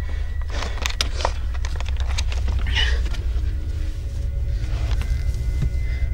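Steady low rumble inside a car cabin from the running engine, with scattered clicks and knocks of handling. Faint background music plays over it.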